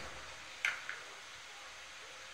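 Faint handling of a USB charging cable: a light click about two-thirds of a second in and a softer one just after, over low hiss.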